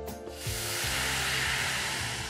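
Water poured from a steel jug into a hot pan, hissing and sizzling as it hits the hot surface, starting about half a second in. Background music plays throughout.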